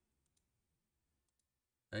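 Faint clicking at a computer: two quick pairs of light clicks about a second apart, like mouse buttons or keys being pressed, in an otherwise near-silent room.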